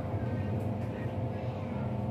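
Steady running noise of an MTR Disneyland Resort Line train heard from inside the moving carriage: a low, even hum with a steady tone above it. Faint passenger voices sit underneath.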